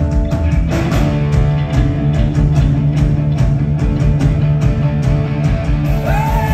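Live rock band playing an instrumental passage: electric guitar and bass over a steady drum beat.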